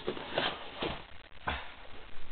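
Handling noise as a TSD SD87 airsoft shotgun is lifted out of its fitted foam packing tray: a few short rubs and knocks of the gun against the foam.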